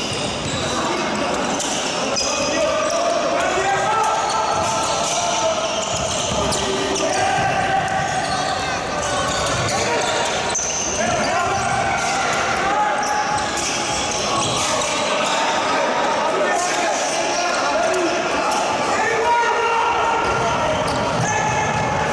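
Handball match play in a sports hall: the ball bounces on the court floor in repeated short thuds, with players' shouts and calls echoing throughout.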